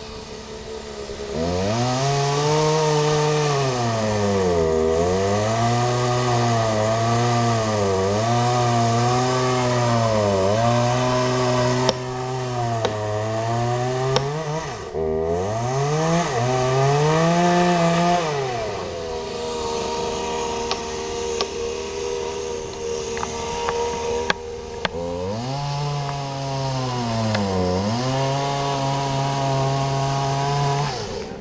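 Chainsaw cutting through a tree trunk, its engine note sagging again and again as the chain bites into the wood and picking back up in between. Past the middle it settles to a steady lower pitch for several seconds, then revs up and cuts again.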